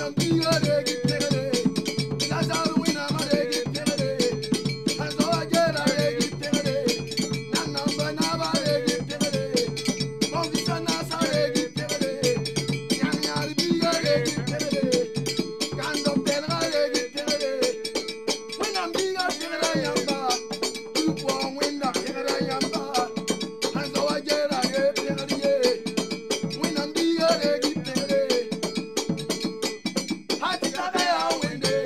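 Traditional Mooré group music: hand drums in a fast, steady rhythm under a short melodic phrase that repeats about every two seconds. The deepest drum part thins out about halfway through.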